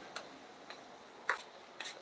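A few faint, short clicks in an otherwise quiet pause, the clearest about two-thirds of the way through.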